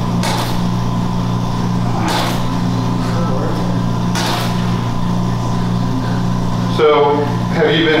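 Steady low hum of a liposuction suction pump, with three short hissing surges about two seconds apart.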